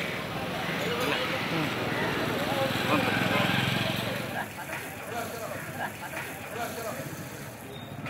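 Busy street ambience: people's voices in the background and passing traffic, with a steady hiss in the first half that fades about four seconds in.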